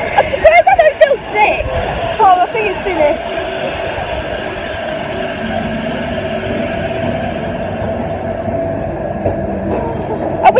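Fairground ride running with a steady mechanical rumble and hum. Voices call out during the first few seconds.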